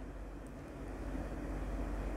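Steady low background hum and hiss of room tone, with one faint click about half a second in.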